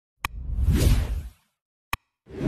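Sound effects of an animated like-and-subscribe graphic: a sharp click, a whoosh lasting about a second, then another sharp click near the end.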